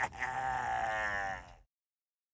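A man's loud, wild laugh ending in one long drawn-out note that falls slightly in pitch, then cuts off to silence about a second and a half in.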